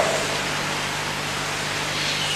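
Steady hiss with a low hum underneath: the background noise of an old recording.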